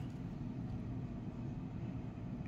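Quiet, steady room tone with a low hum and no distinct sound events.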